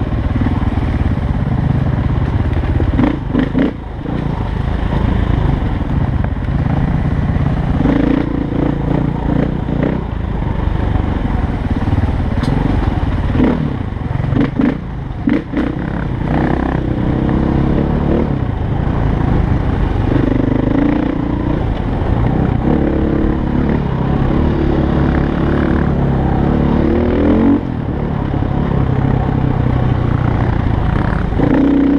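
Dirt bike engine running while the bike is ridden over rough trail, its pitch climbing and dropping again and again with the throttle, most clearly in the second half. A few short knocks come in the first half.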